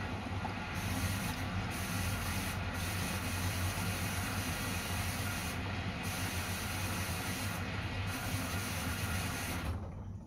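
Samsung front-loading washing machine taking in water: a steady hiss of water rushing into the drum over a low, even hum, which cuts off sharply near the end as the inlet valve shuts.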